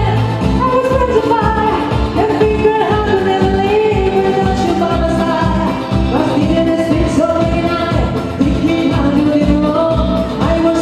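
A woman singing into a microphone, backed by a live band of electric guitars, bass guitar and keyboard, over a steady beat.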